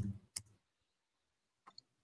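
A single sharp click about a third of a second in, then two faint clicks close together near the end, with near silence in between.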